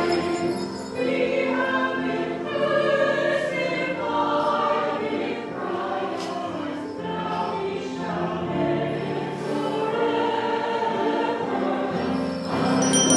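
Church choir and congregation singing a hymn together, in long held notes that change every second or so.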